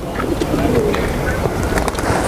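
Pigeons cooing low under a steady rush of background noise, with a few scattered clicks.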